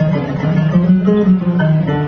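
Guitar playing a quick single-note phrase on the diminished scale, jumping by minor thirds, settling on a held note near the end.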